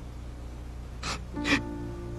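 Two sharp gasps about a second in, the second louder, as soft sustained music notes come in over a low steady hum.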